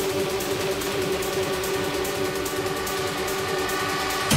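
Industrial techno from a DJ set, in a stretch without the heavy kick: a held synth chord with fast ticking hi-hats over it and little bass.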